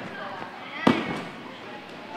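A single sharp thud about a second in: a gymnast landing a tumbling flip on the floor. Faint voices chatter in the background.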